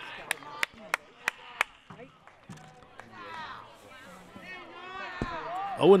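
Five sharp clacks in quick, even succession, about three a second, followed by faint chatter of players and spectators.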